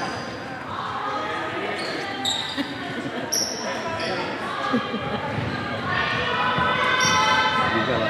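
A basketball bouncing on a hardwood court in a large, echoing gym, with players' voices and a few short high squeaks.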